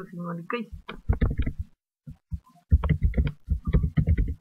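A man's voice muttering and half-speaking words in Spanish, low and indistinct, with a short pause in the middle.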